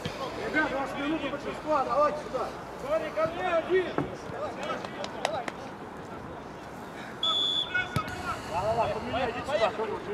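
Players' voices calling out across a football pitch, indistinct. About seven seconds in comes one short, steady, high blast of a referee's whistle restarting play, followed by a single knock.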